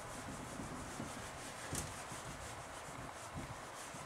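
Whiteboard eraser rubbing dry-erase marker off the board: a faint, steady scrubbing.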